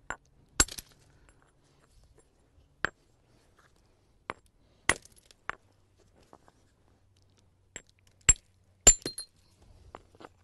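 Hard-hammer flintknapping: a stone cobble hammer striking the edge of a flint nodule, about eight sharp stony cracks at irregular intervals as flakes are knocked off, the loudest about half a second in and near the end. Each strike detaches a flake to build an edge around the piece, the first stage of roughing out a handaxe.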